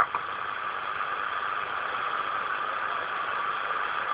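Receiver static from a Lincoln 11-metre transceiver's speaker on an empty single-sideband channel: a steady hiss after a voice on the radio cuts off right at the start.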